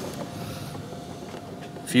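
Low, steady background hum with a faint steady tone in it, no single event standing out.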